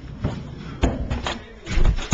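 A Razor kick scooter ridden down a hallway: a few sharp knocks, then a heavy, deep thud near the end as the rider crashes into a mattress propped against the wall.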